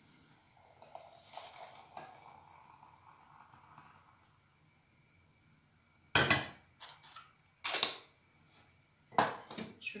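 Boiling water poured from a steel kettle into a Turkish teapot to brew tea, a faint trickle that rises slightly. Later come several sharp metal clanks as the steel teapot and kettle are set down and stacked on the gas hob.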